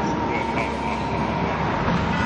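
A loud, steady, dense rumble with a constant high whine running through it, part of a dark intro soundtrack.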